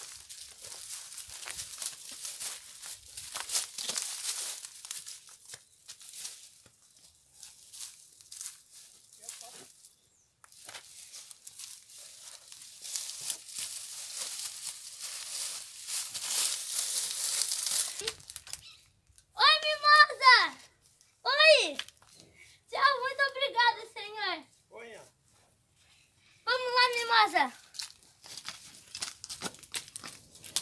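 Crackling, rustling steps and movement through dry straw and leaves; from about two-thirds of the way in, five loud, high calls, some falling in pitch and some quivering, each about a second long.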